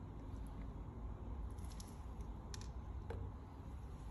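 Quiet room noise with a few faint, light clicks from handling a glass pipette and test tubes.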